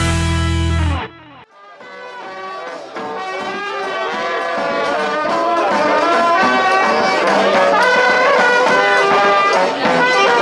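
Intro music cuts off about a second in; then a brass band with a sousaphone fades in playing a lively tune, growing louder and holding steady through the rest.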